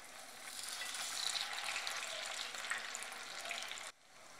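Semolina and green pea tikkis shallow-frying in hot oil in a pan over medium heat: a steady sizzle that cuts off abruptly just before the end.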